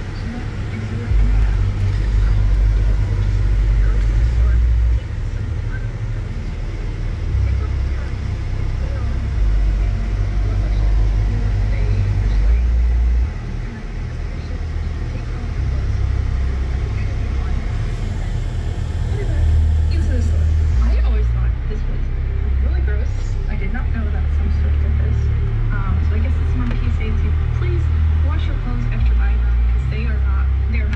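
Inside a moving car: strong, uneven low engine and road rumble fills the cabin, with faint, indistinct talk from the car radio underneath.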